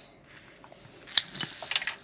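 Small sharp clicks of handled plastic: one about a second in, then a quick rattle of several clicks near the end.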